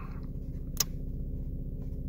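A 2006 Mazda RX-8's rotary engine idling steadily, heard as a low hum from inside the cabin. A single sharp click comes a little before the middle, as the sun visor is handled.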